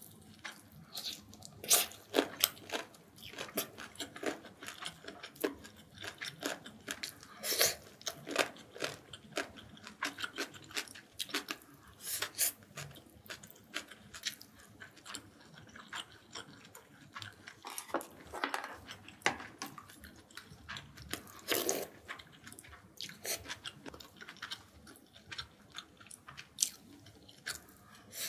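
Close-miked mouth sounds of someone eating braised short ribs and rice: chewing with irregular sharp clicks and smacks, several a second.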